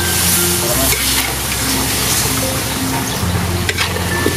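Pork pieces sizzling as they fry in a large wok, stirred with a metal spatula that scrapes and clicks against the pan now and then. Background music with steady low notes plays underneath.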